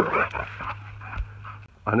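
A dog close to the microphone making short breathy sounds, strongest in the first half-second, over a steady low hum; a man's voice starts just at the end.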